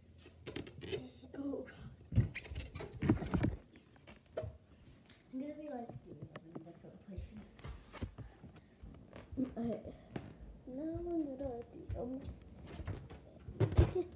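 A child's voice making short wordless exclamations between scattered dull thumps and knocks as a rubber balloon is batted about and the camera is handled. The loudest knocks come about two and three seconds in and again near the end.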